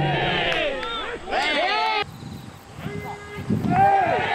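Several voices calling out together, rising and falling in pitch, for about two seconds. The sound then cuts off abruptly to quieter field sound, with another voice calling near the end.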